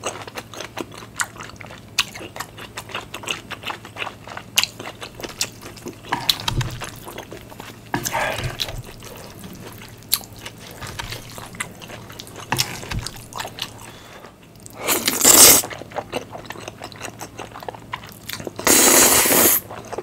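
Close-up mouth sounds of eating spicy instant noodles with melted cheese and corn: wet chewing with many small clicks and smacks, and two loud noodle slurps, one about fifteen seconds in and a longer one near the end.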